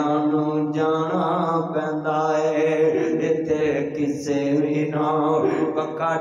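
A man's voice chanting Punjabi verses of mourning over a microphone in long held, drawn-out notes that glide from pitch to pitch.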